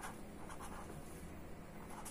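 Marker pen writing on paper: a few faint, short scratchy strokes as a word is written out.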